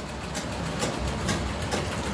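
Treadle sewing machines running: a steady low rumble with quick, irregular clicking from the mechanism.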